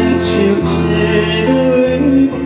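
A man singing a Chinese popular song into a microphone, backed by a live band with violins, drums and sustained bass notes.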